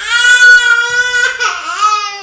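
A crying sound effect: one long, loud wail, held steady, then wavering and sagging slightly in pitch near the end.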